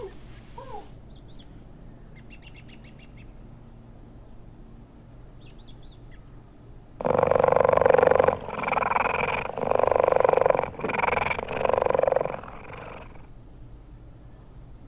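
Faint bird chirps over forest background, then, from about halfway, a big cat growling loudly in four long, harsh pulses.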